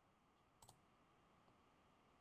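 Near silence with a quick double click of a computer mouse a little over half a second in, followed by a much fainter tick.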